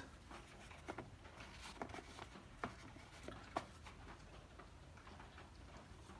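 Faint handling sounds of a vintage Rolex watch box: light taps and rustles as its padded inserts are lifted out and set into the velvet-lined tray, with a few short, sharp clicks scattered through the first few seconds.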